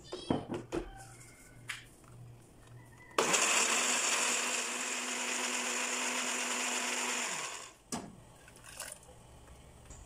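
Black+Decker countertop blender running, puréeing chilies, onion, garlic and lemongrass with water into a curry paste: the motor starts abruptly about three seconds in, runs steadily for about four seconds with a constant hum, and cuts off suddenly. A few light clicks and knocks come before it starts and one after it stops.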